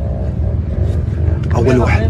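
A steady low rumble of a running motor, with a man's voice briefly near the end.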